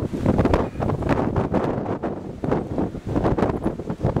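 Wind buffeting the camera microphone outdoors: uneven gusts of rumbling noise.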